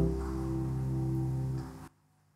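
Korg SG ProX stage piano holding a final chord that dies away and then cuts off suddenly near the end.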